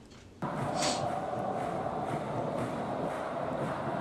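Large stadium crowd of football supporters chanting and cheering together, cutting in abruptly about half a second in and then holding steady.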